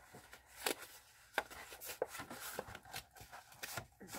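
Manila file folder card stock being folded and creased by hand along its score lines: quiet paper handling with a few short, sharp clicks and crackles.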